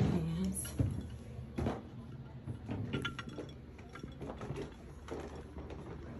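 Footsteps of someone walking along a hallway carrying a loaded breakfast tray, a soft knock roughly every second.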